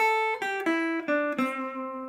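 PRS electric guitar playing a single-note blues line in the A minor pentatonic box 1 pattern: about five picked notes stepping down in pitch, the last one held and left ringing.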